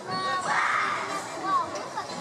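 Indistinct chatter of children's and adults' voices, with a louder burst of voice from about half a second to a second in.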